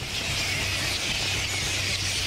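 A large colony of fruit bats (flying foxes) screeching and chattering all at once, a dense steady high-pitched din of many overlapping calls.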